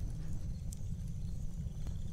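Wood fire burning: a steady low rumble with a few sharp crackles, one about midway and one near the end.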